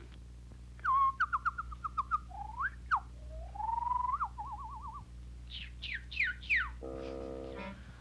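Cartoon bird calls made as whistles: a rapid trill, sliding swoops, a rising note that breaks into a warble, then four quick falling chirps. A short buzzy note follows near the end.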